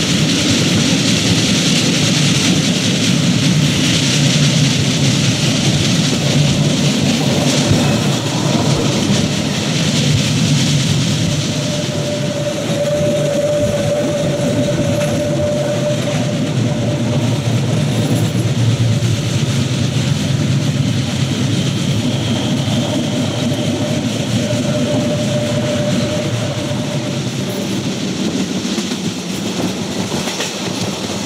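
Narrow-gauge electric train running along the track, heard from an open window of the moving carriage: a steady rumble of wheels on rails. A thin steady whine comes in twice in the middle.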